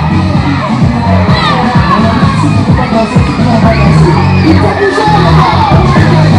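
A crowd of children shouting and cheering over loud dance music with a steady bass beat.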